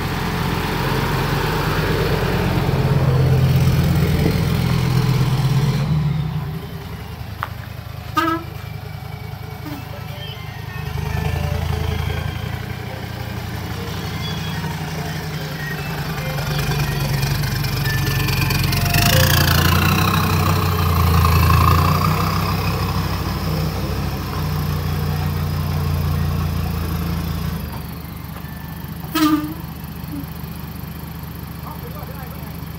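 Diesel engine of a loaded Hino dump truck running as it manoeuvres, its note swelling and easing several times with the throttle. A short sharp sound breaks in near the end.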